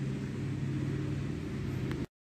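A steady, low machine drone made of several even, steady tones with a faint hiss beneath, and one short click near the end.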